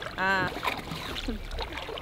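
A voice calls briefly near the start, then faint, steady water noise around a coracle on the river, with a low rumble underneath.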